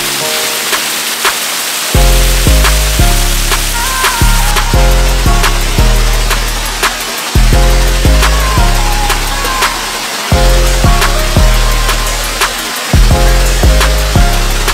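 Background music with a steady beat and deep bass notes; the bass comes in about two seconds in.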